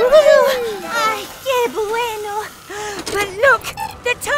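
High-pitched cartoon character voice making short wordless vocal sounds that slide up and down in pitch.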